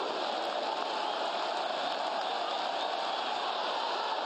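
Football stadium crowd: a steady din of many voices with no single voice standing out.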